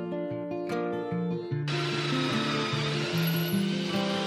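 Acoustic guitar background music, and a little before halfway through a cordless drill starts running steadily over it, its motor whine mixed with a loud rushing noise.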